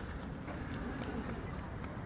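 Outdoor night ambience of faint, indistinct voices of people talking nearby, with scattered light footsteps on a rubber running track and a low wind rumble on the microphone.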